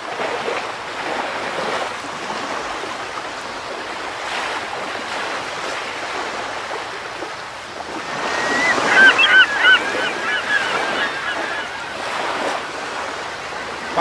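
Ocean waves washing steadily, with a string of short, high seabird calls about eight to eleven seconds in.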